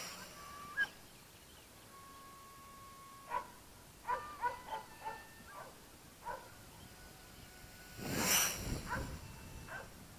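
Short animal calls, a dozen or so at irregular intervals, with a loud rush of noise about eight seconds in.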